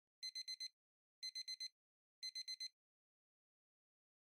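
Electronic beeping, added in editing over otherwise silent audio: three quick sets of four high-pitched beeps, about one set a second, like a digital alarm clock.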